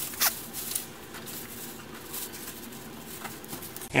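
Clear plastic foam-in-place bag crinkling as it is handled, with a short sharp rasp about a quarter second in and a few small clicks, while the wheelchair back cover's zipper is worked closed over the bag.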